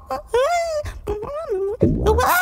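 A cartoon egg character's wordless voice wailing in fright, in a few short wavering phrases that slide up and down in pitch.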